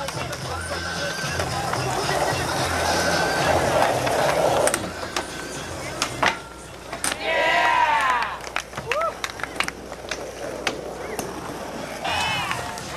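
Skateboard wheels rolling on asphalt for the first few seconds, then a few sharp clacks of the board hitting the ground, with onlookers shouting about seven seconds in.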